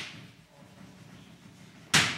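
Chalk on a blackboard: a short stroke at the start, then a sharp, loud tap of the chalk against the board near the end, as the full stop is put at the end of a written line.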